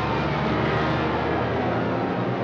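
Propeller airplane engines running at high power, a steady, dense drone with low engine tones.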